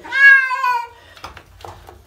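A wet black-and-white domestic cat gives one long, loud, high-pitched meow that falls slightly in pitch at the end. It is a distressed cry at being bathed. A few faint clicks follow in the quiet second half.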